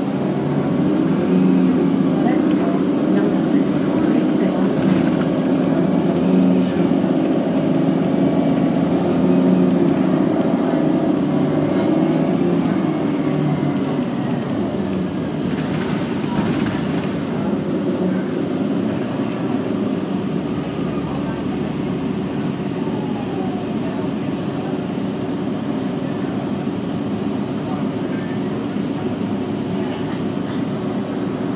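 Cabin sound aboard a 2009 Orion VII NG diesel-electric hybrid city bus under way: a steady drivetrain drone with pitched tones that ease off about halfway through, over road noise. A brief hiss comes near the middle, and a steadier, slightly quieter drone follows.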